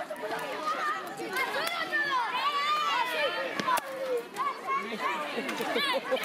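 Many children's voices shouting and chattering over one another as they play, with a few sharp claps or knocks among them.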